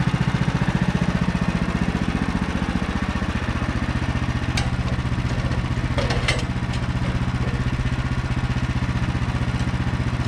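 Woodland Mills HM130MAX sawmill's engine idling steadily, its note dropping slightly a couple of seconds in. A few sharp knocks sound around the middle as a slab piece is handled and positioned on the mill bed.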